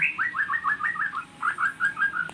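A bird chirping: a quick run of short, falling notes, about five a second, with a brief pause about a second in.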